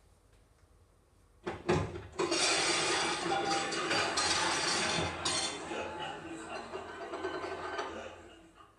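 Recorded clip from a TV comedy show, played from a coursebook listening track: a couple of knocks, then a dense wash of music and voices that fades near the end.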